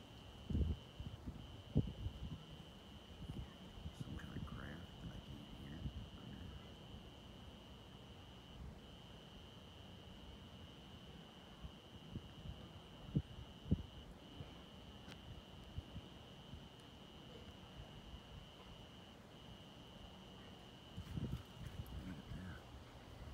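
A cricket's steady high trill runs on and breaks off briefly every five seconds or so. A few low thumps come over it, the loudest about half a second in, just under two seconds in, and twice close together past the middle.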